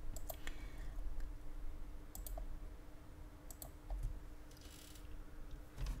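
A few light computer mouse clicks, some in quick pairs, over a faint steady hum.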